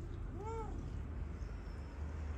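A domestic cat gives one short meow, rising and then falling in pitch, about half a second in, over a low steady rumble.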